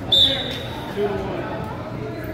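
A short, loud whistle blast just after the start: one high steady note that fades within half a second, heard over background voices.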